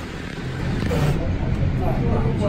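Cable car cabin running with a low steady rumble that grows louder about half a second in, with voices in the cabin.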